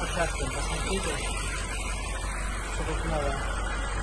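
Faint, indistinct speech over a steady hiss-like background noise with a constant low hum.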